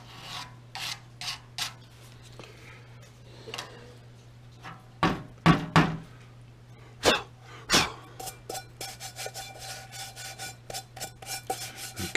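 Hands rubbing and scraping over an aluminum pot and a sheet-metal tray in short strokes, with a few louder knocks about five and seven seconds in, then a run of quick short scrapes, about four a second, near the end.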